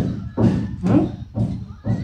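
A voice talking in short phrases, which the recogniser did not write down as words.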